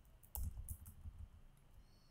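A few computer keyboard keystrokes, typing a command into a terminal, the loudest about a third of a second in.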